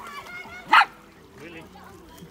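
A dog giving one short, sharp bark about three-quarters of a second in, the loudest sound here.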